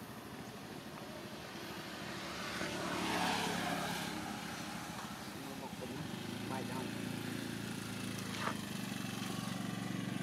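A motor vehicle engine running, swelling to its loudest about three seconds in, then a steady low engine hum from about six seconds on.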